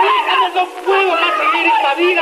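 Several voices at once, wailing and shouting without clear words during a struggle, in thin, tinny old television sound.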